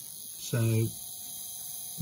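Faint steady hum of a rebuilt Hornby Dublo Ringfield model-railway motor running on the bench under power from the controller. It is being run in on a new commutator with freshly refaced brushes.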